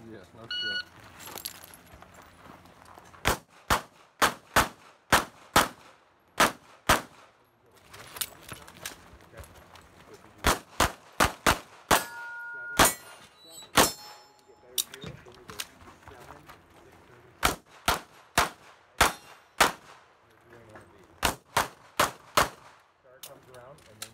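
A shot-timer beep about half a second in, then pistol shots fired in rapid strings, mostly quick pairs, with short pauses between groups as the shooter moves through the stage. Steel targets ring when hit, most plainly around the middle.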